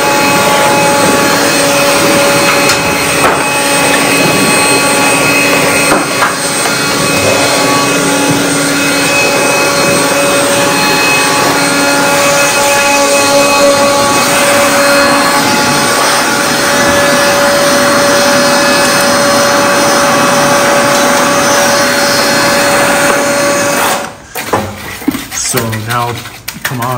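An air blower running steadily with a whine, blasting dust and debris out of a stone-wall opening where a rotted wooden lintel was removed; it stops about two seconds before the end.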